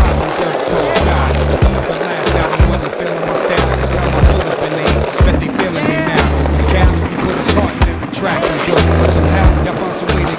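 Skateboard wheels rolling and the board clacking repeatedly, over a hip-hop beat with heavy bass.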